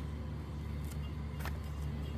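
A steady low engine hum, with two sharp metallic clicks from a wrench working on the transmission case, the second a little over half a second after the first.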